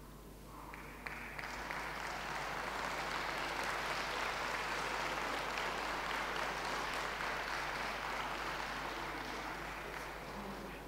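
Audience applauding, starting about a second in, holding steady, then easing off near the end.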